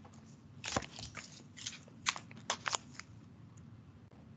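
Handling noise close to the microphone: a scatter of short clicks and crackles as something is picked up and moved, the loudest about three-quarters of a second in and a quick cluster a little past the two-second mark.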